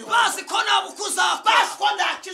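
A man talking loudly and excitedly in Kinyarwanda, in rapid, emphatic bursts.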